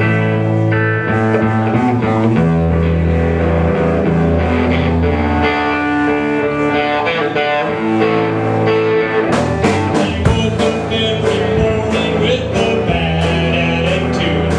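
Live rock band opening a song: guitar chords ring over held low bass notes, and drum hits join about nine seconds in.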